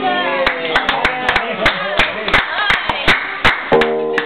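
A few people clapping, loose and uneven, with a voice calling out in the first second. A strummed acoustic guitar chord rings out near the end.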